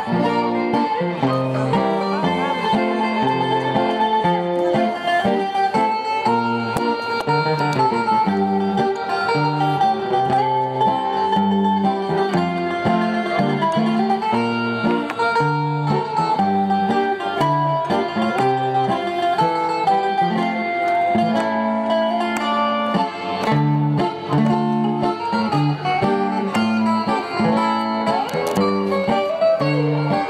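Live acoustic music from two musicians playing plucked string instruments, a guitar among them. A steady plucked melody runs over regularly changing low notes.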